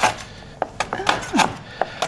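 Chef's knife chopping a hard block of palm sugar on a cutting board: a sharp knock at the start, then a few lighter, unevenly spaced chops as the sugar crumbles.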